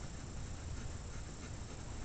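Faint scratching of a graphite pencil shading on paper, small quick strokes building up a gradation.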